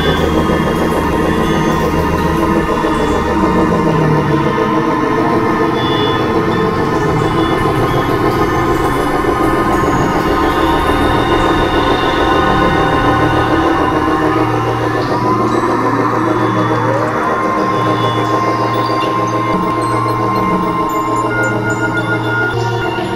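Experimental electronic synthesizer music made of dense, layered drones and held tones over a low pulsing hum. Rising pitch glides come in about two-thirds of the way through, then a steady higher tone is held for a few seconds.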